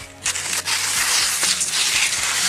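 Off-track nordic skis and ski poles crunching through snow as a skier sets off, a dense crunching that starts about a quarter second in.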